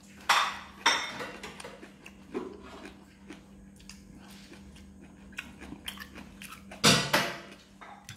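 Close-up eating sounds: chewing and the clink of chopsticks and fingers on plates, with a few sharp, louder noises near the start and about seven seconds in, over a steady low hum.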